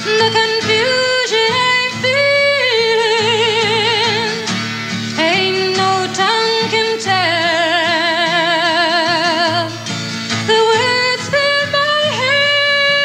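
A woman singing in a high voice over acoustic guitar, holding long notes with a wide, even vibrato and stepping from one sustained pitch to the next.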